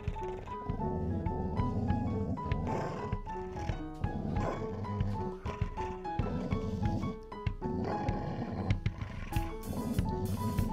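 A dog growling low and continuously, under upbeat background music with a plucked, stepping melody.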